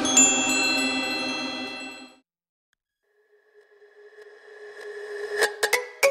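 Logo intro music: a held chord with high chime tones that fades out about two seconds in. After a second of silence a new electronic music sting swells up, with a few sharp clicks near the end.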